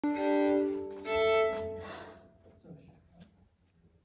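Violin playing two sustained notes, the second one higher, which ring in the hall and fade out about two seconds in.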